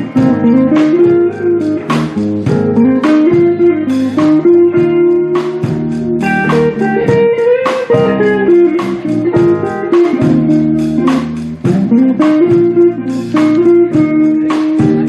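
Big band playing live: held saxophone and horn lines with a few sliding notes over a steady rhythm-section beat.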